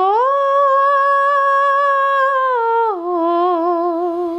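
A woman singing unaccompanied, without words. One long note rises about a quarter second in and is held steady, then drops to a lower note near three seconds that wavers with vibrato.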